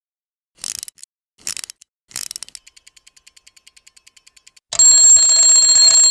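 Sound effect of a clockwork timer: three short bursts of ratcheting clicks as it is wound, then fast, even ticking for about two seconds, then a loud, steady bell ringing from a little before the end.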